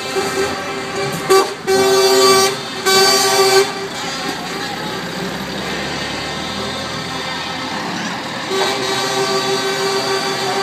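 Lorry horns sounding: two loud blasts of under a second each about two seconds in, then a softer held horn near the end, over the steady running of slow-moving lorries.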